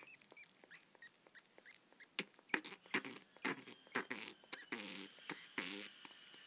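Juvenile little red flying-fox snuffling: short, noisy breaths through a swollen, congested nose, a little over two a second from about two seconds in, the last ones longer. Faint small clicks of her feeding at the syringe come before.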